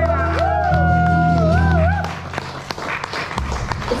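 A woman's voice holding the last sung note with vibrato over acoustic guitar, ending about halfway through; then an audience applauding.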